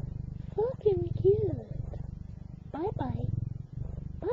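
Domestic cat purring with the microphone pressed close against it: a steady low purr that runs on throughout. Twice, about a second in and around three seconds in, short wordless vocal sounds with gliding pitch rise over it.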